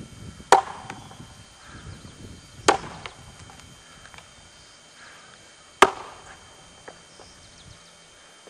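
Axe chopping into an upright wooden trunk: three sharp strikes, about half a second in, near three seconds and near six seconds, with a few lighter knocks between.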